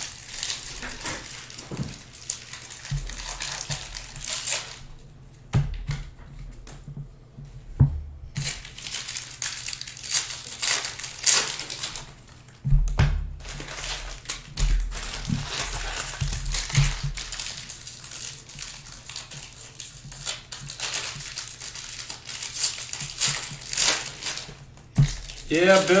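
Foil wrappers of sealed trading-card packs crinkling and rustling as stacks of packs are picked up and moved by hand; the crackling comes and goes, with a lull about five seconds in.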